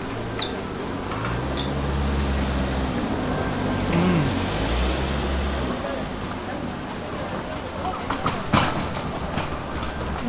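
A man's closed-mouth "mmm" hum of enjoyment while chewing a soft mochi. The hum swoops up and back down in pitch about four seconds in. Steady street background noise runs underneath, and a few sharp clicks come near the end.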